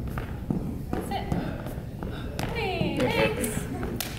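Dance shoes stepping, kicking and landing on a hardwood floor in a large hall, giving several sharp taps and thuds. A voice joins in during the second half.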